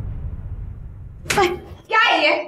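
A low rumbling background drone fades away. About a second and a half in, a woman gives a short, sudden cry.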